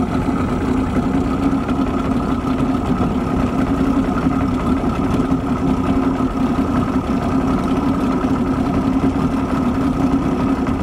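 Boat motor running at a steady, even speed.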